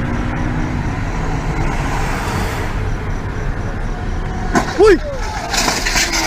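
Car driving, heard from inside the cabin: a steady low rumble of road and engine. Near the end there is a brief loud voice call.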